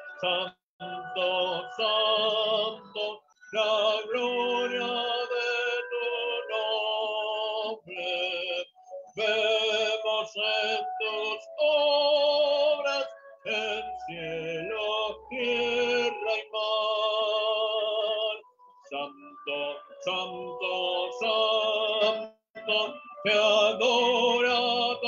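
A hymn sung to musical accompaniment: long held notes with vibrato, broken by several abrupt short drops to silence.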